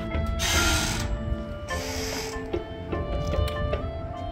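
Marching band and front-ensemble pit playing held tones with struck mallet notes, cut across by two short bursts of a noisy percussion effect, about half a second and about two seconds in.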